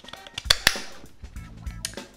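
Two sharp plastic clicks close together about half a second in, then a lighter click near the end, as a British plug head is snapped onto a USB charger in place of its removable pins.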